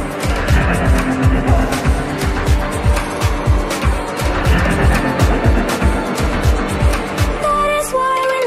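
Runway soundtrack music: an electronic track driven by a fast, steady kick-drum beat with ticking hi-hats. Near the end a held synth melody comes in as the beat starts to drop away.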